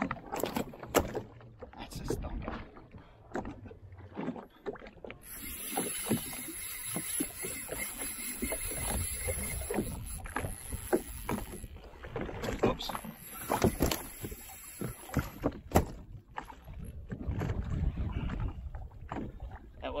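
Water slapping and knocking against the hull of a drifting jet ski, with wind on the microphone, while a spinning reel is worked during a fight with a fish. There are repeated short knocks and clicks throughout, and a high hiss from about a quarter of the way in until roughly three quarters through.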